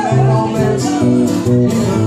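Live instrumental passage from a small acoustic band: strummed acoustic guitar and a second guitar, with a fiddle bowing the melody over them.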